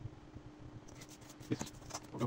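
Faint rustling and light clicks of paper pattern pieces being shifted and handled on a cutting mat, with a sharper knock about one and a half seconds in, over a low steady hum.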